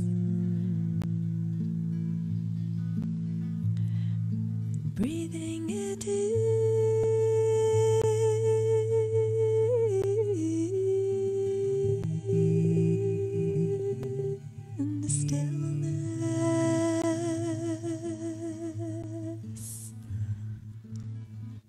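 Two voices improvising wordless humming and singing together on one chord. A low hum is held steadily underneath, and from about five seconds in a higher voice sustains long notes with vibrato, stepping down in pitch about ten seconds in and again about fifteen.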